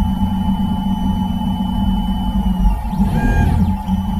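Low-cost TRONXY 3D printer running its first layer: a steady low hum under a held high whine from the stepper motors. The whine stops a little over halfway through and is followed by a short whine that rises and falls as the print head moves.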